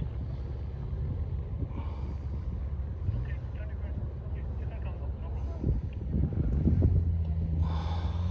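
Off-road 4x4 engine idling close by, a low steady hum that swells about six to seven seconds in.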